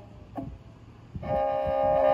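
Kazakh kyl-kobyz, a two-string bowed horsehair fiddle, pausing mid-phrase: a short ringing note sounds about half a second in. A long bowed note then enters about a second in and holds steady.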